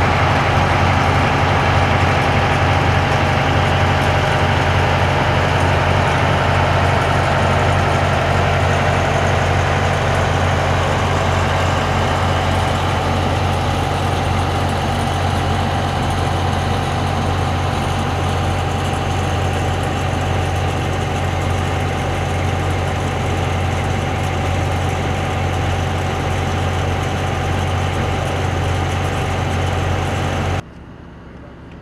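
Fire truck engine running steadily at the pump panel, a loud constant low hum with a faint steady whine above it.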